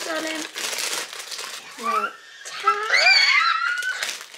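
Shiny gift wrapping paper crinkling and rustling as a present is handled and unwrapped, with short high-pitched excited voices over it.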